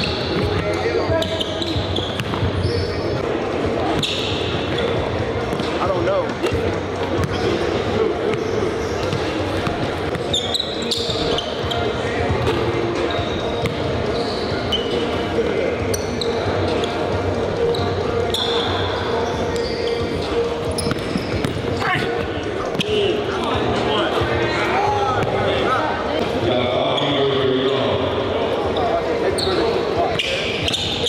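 A basketball being dribbled on a hardwood gym floor, with repeated bounces echoing in a large hall, over continuous chatter from the people around the court.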